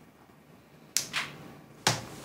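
Three sudden sharp cracks against a quiet background: one about a second in, a second just after it that falls away in pitch, and a louder, fuller third near the end.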